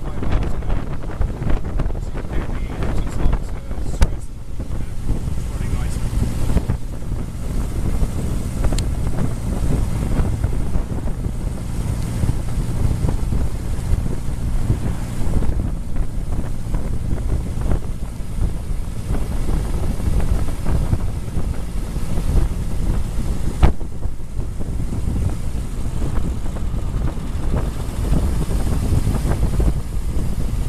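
1924 Bullnose Morris Cowley's four-cylinder engine running steadily as the car drives along the road, heard from inside the open tourer with wind buffeting the microphone. There are a couple of brief clicks or knocks.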